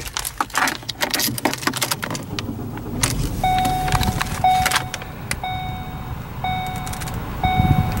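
Keys jangling and clicking as someone settles into the driver's seat of a 2014 Ford Focus, then the car's warning chime sounding from about halfway through: a steady mid-pitched tone repeating about once a second, five times.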